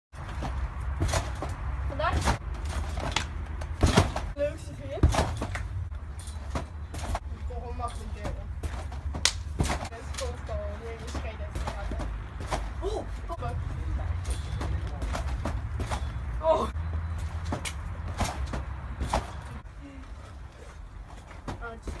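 Repeated thumps of people bouncing and landing on a backyard trampoline, coming irregularly about once a second, the loudest a few seconds in, over a low steady rumble.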